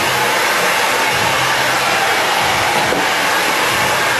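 Handheld hair dryer running steadily, blowing air onto hair as it is styled.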